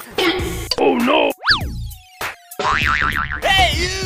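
Cartoon-style comedy sound effects laid over music: a quick springy up-and-down glide about one and a half seconds in, a steady held tone, then a fast warbling wobble and swooping tones near the end.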